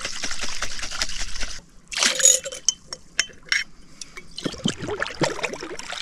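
Water splashing and pouring in a glass mason jar as it is rinsed out, followed by a few short clinks against the glass about two to three and a half seconds in.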